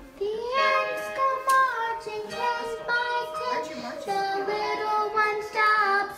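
Children singing a tune together in high voices, without instrumental accompaniment.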